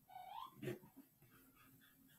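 Near silence, broken by one faint, short high whine from an animal in the background that dips and rises in pitch, followed by a soft click.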